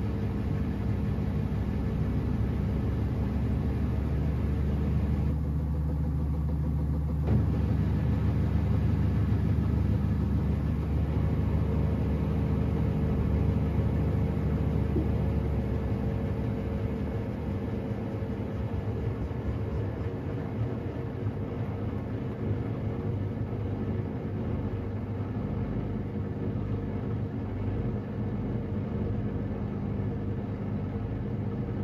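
Samsung front-loading washing machine running, its motor turning the drum with a steady low hum and a few held tones. The higher part of the sound briefly drops away and comes back a few seconds in.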